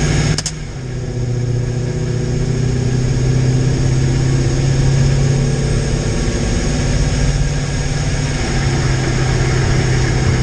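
Supercharged 5.7 Hemi V8 heard from inside the pickup's cab, running at light throttle and low speed while still cold. About half a second in there is a short click and the engine note drops to a lower, steady pitch.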